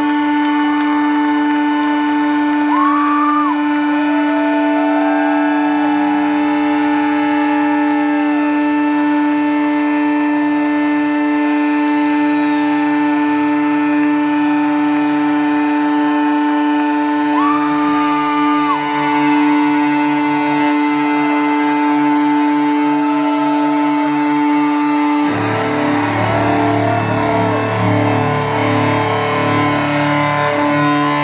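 Sustained electric guitar feedback drones through effects, with slow gliding, wavering tones over the held notes. About 25 seconds in, the full rock band comes in suddenly with loud distorted guitars and drums.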